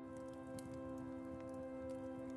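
Soft ambient music of steady held tones, joined right at the start by a fine pattering ambience with scattered light ticks, like rain on a surface.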